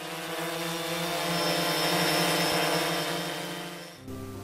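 Quadcopter drone propellers buzzing with a steady, pitched whine, growing louder toward the middle and fading away near the end.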